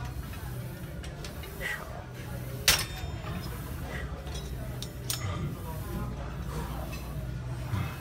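A single sharp metal clink from a cable machine's weight stack about a third of the way in, as the weight is changed between sets. A steady low gym hum and faint distant voices run beneath it.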